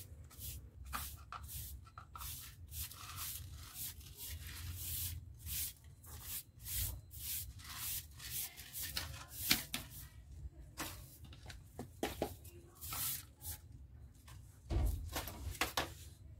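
Small hand broom sweeping spilled potting soil off a concrete floor: a run of short, irregular scratchy brush strokes, with a dull knock near the end.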